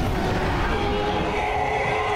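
Soundtrack of a TV episode: a steady rushing, rumbling noise with a few long held musical tones over it.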